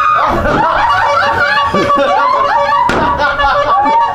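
Excited voices and laughter, over a steady high tone in the background, with a single sharp thump about three seconds in.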